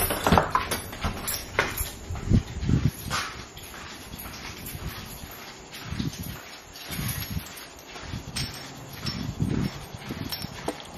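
Rustling and knocking of a handheld camera rubbing against a cotton shirt while being carried, with irregular low thumps of footsteps.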